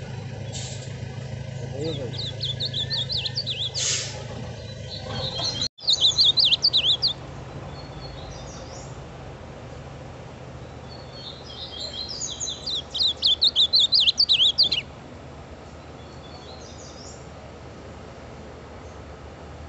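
A male ultramarine grosbeak (azulão), a novice song bird, singing its quick warbled song in phrases: a softer one about two seconds in, a loud short burst about six seconds in, and a longer loud phrase from about eleven to fifteen seconds.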